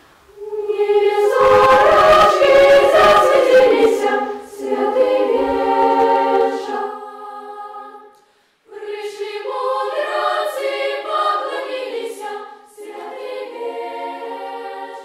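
Children's choir singing a Christmas carol in Belarusian, a cappella. The singing breaks off briefly about eight seconds in, then resumes.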